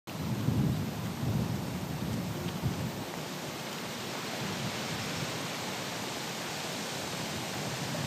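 Wind on an outdoor microphone: a low rumble over the first few seconds, settling into a steady even hiss.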